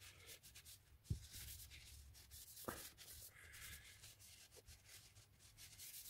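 Very faint rubbing of a cloth wiping Danish oil onto an oak handle held on a lathe, with two soft knocks, about one and nearly three seconds in.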